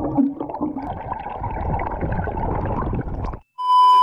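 Muffled underwater bubbling and rumble as a swimmer breathes out a stream of bubbles beneath the surface, which cuts off suddenly. After a short silence near the end comes a loud, steady, high test-pattern beep, the tone that goes with TV colour bars.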